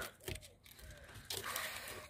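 Adhesive tape being peeled off a camper van window, a faint rasp in the second half.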